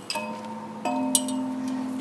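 Tall metal chime pipes of an outdoor musical instrument struck twice with a beater, a little under a second apart. Each strike gives a ringing bell-like note, and the second, different note rings on to the end.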